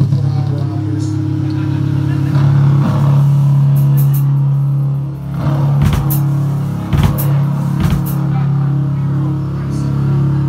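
Electric guitars through amplifiers holding a loud, low droning note, with three sharp hits about a second apart partway through.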